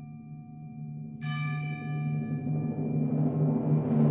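Orchestral music: a sustained chord over a timpani roll. A fuller, higher chord enters about a second in, and the whole builds in a crescendo.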